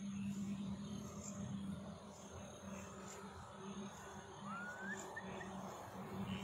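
A single short rising whistled call about four and a half seconds in, followed by two brief high chirps, over a steady low hum and faint high ticking.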